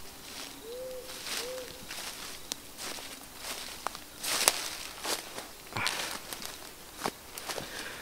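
Footsteps crunching and rustling through dry leaf litter and undergrowth on a forest floor, in uneven steps. Two short, faint hoot-like calls sound about a second in.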